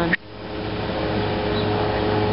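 Steady buzzing drone of a crowd of honeybees at the hive entrance, growing louder over the first second.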